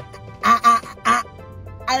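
A young man's loud, high vocal cry in two short bursts about half a second apart, over steady background music.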